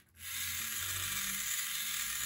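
Small DC hobby motor with a plastic gearbox running steadily at full speed, a continuous gear whir. It has been switched on by the Crumble controller because the covered light sensor reads below its threshold.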